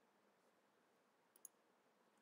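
Near silence with one faint computer mouse click about one and a half seconds in.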